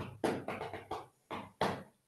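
Fingers drumming on a tabletop, a run of about six quick taps over a second and a half, heard through a video-call audio link.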